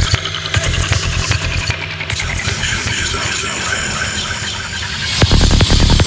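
Dark psytrance track in a breakdown: the kick drum and bassline drop out, leaving dense, high, noisy synth textures. The pounding kick and bass come back about five seconds in.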